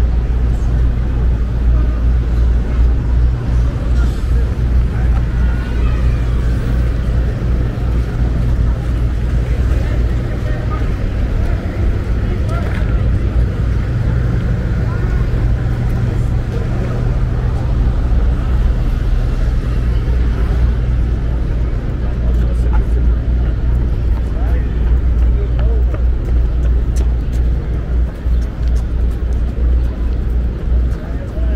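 Busy street ambience along a park road: a steady, loud low rumble with passing cars and scattered voices of passers-by.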